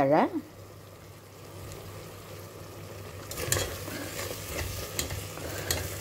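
Long metal spoon stirring thick tomato gravy in a stainless-steel pressure cooker, with scrapes and clinks against the pot from about three seconds in, over the faint sizzle of the gravy cooking.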